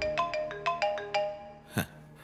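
Mobile phone ringtone playing a quick marimba-like melody of clear struck notes, about five or six a second, with a short thump near the end.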